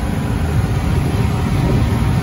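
Steady low hum and rumble of a running water-cooled commercial air-conditioning unit, its compressor and fan both on.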